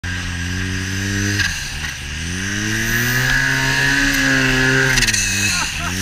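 Snowmobile engine revving as the sled ploughs through deep powder: the pitch drops about a second and a half in, climbs to a high, held note, then falls away near the end before picking up again. A steady hiss of wind and snow rides over the engine.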